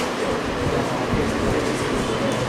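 Steady background hum and hiss with no distinct event, holding at an even level throughout.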